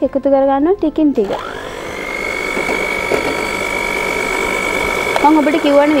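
An electric hand mixer starts about a second in and runs steadily with a high whine, its beaters whipping cream.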